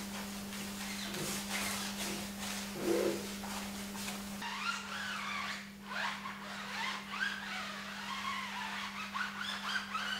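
A brush scrubbing a foam-covered tire and alloy wheel in short strokes. Partway through, this changes to a pad wiping a tire sidewall, with wavering squeaks rising and falling in pitch. A steady low hum runs underneath throughout.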